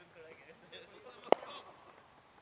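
Faint voices in the background, broken about a second and a half in by a single sharp click close to the microphone that rings briefly.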